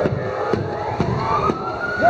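Ambulance siren wailing, its pitch climbing slowly, with a few faint ticks about every half second.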